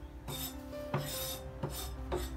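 A steel cleaver blade scraped across a wooden chopping board three times, gathering up finely chopped garlic.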